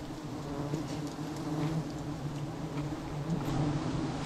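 A mass of wild honey bees buzzing around their open hanging comb: a steady, low, wavering hum.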